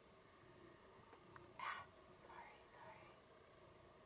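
Faint whispering: a short breathy burst about one and a half seconds in, then a few softer whispered sounds, against near silence.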